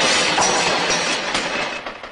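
Crash sound effect of a collapsing pile: a loud noisy clatter that breaks up into a run of separate sharp clicks, fading away near the end.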